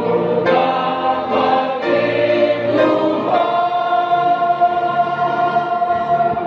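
Grand piano playing a gospel song, with voices singing along. About halfway through, the singing slides up into one long held note.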